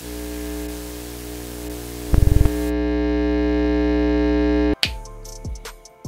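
Synthesized transition effect: static-like hiss under a sustained droning chord that grows louder, with a brief rapid stutter a little after two seconds. It cuts off abruptly near the end, and sharp-hitting music follows.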